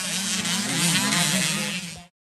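Small youth dirt bike engine riding and revving, its pitch rising and falling repeatedly. The sound cuts off suddenly at the end.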